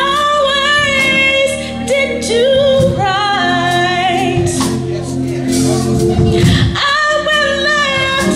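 A woman's lead vocal singing gospel praise through a microphone, holding long notes with vibrato over a band's steady accompaniment.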